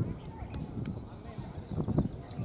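Indistinct voices of cricket players calling out on the field, over an uneven low rumble with irregular thumps.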